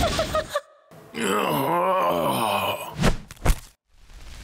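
A cartoon character's drawn-out wordless groan, its pitch wavering up and down, followed by two quick thumps.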